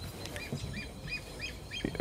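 A small bird chirping in the background: a quick, even series of short high chirps, about three or four a second.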